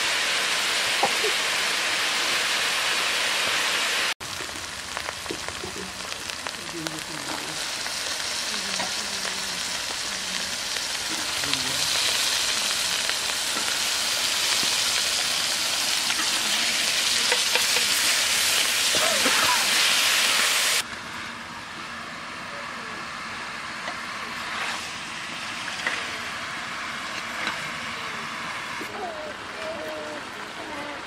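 Spiced onion, tomato and chilli, and then cucumber pieces, sizzling in hot oil in a metal karahi, stirred now and then with a metal ladle. The steady hiss breaks off abruptly at about four seconds and again at about twenty-one seconds, and after that it is quieter and duller.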